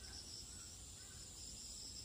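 Faint, steady high-pitched insect chorus, like crickets, holding one even pitch without a break, over a low rumble.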